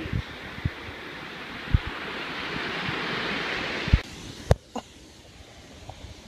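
Surf breaking and washing up the sand, with wind buffeting the microphone in occasional low thumps. About four seconds in, the surf sound cuts off abruptly, leaving a quieter background with a couple of sharp knocks.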